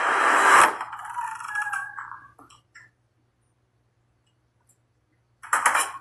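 Movie trailer soundtrack: a loud burst of noise cuts off under a second in and a few fading tones die away, leaving near silence for a couple of seconds. The soundtrack comes back in suddenly near the end.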